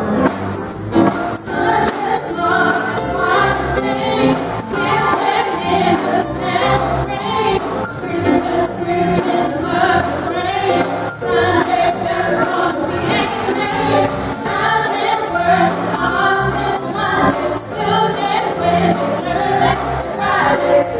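A group of voices singing a gospel song, with a tambourine shaken in time and a steady rhythmic accompaniment.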